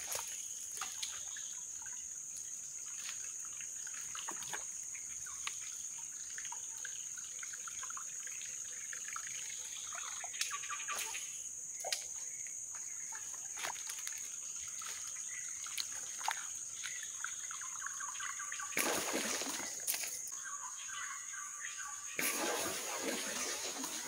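Whopper Plopper topwater lure being retrieved across still water: its spinning tail plops and gurgles on the surface in a run of small splashes. There is a louder burst of noise about nineteen seconds in.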